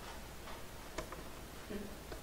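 A few light clicks, the sharpest about a second in, over a faint steady low hum, with a brief low vocal sound near the end.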